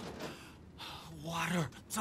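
A man gasping for breath, then letting out a short groan that falls in pitch, a sign of exhaustion and thirst.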